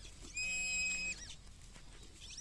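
XP Deus metal detector signal: a single steady electronic tone lasting just under a second, given over a large buried iron object that reads as a non-ferrous 'colour' tone.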